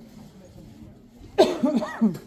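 A person coughing close to the microphone: a short run of loud coughs starting about one and a half seconds in.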